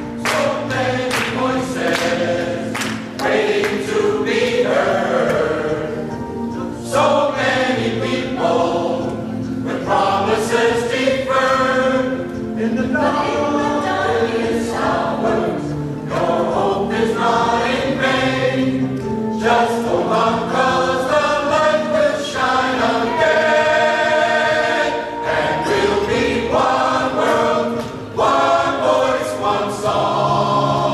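Mixed chorus of men's and women's voices singing together. Sharp percussive hits come through now and then, several in quick succession right at the start.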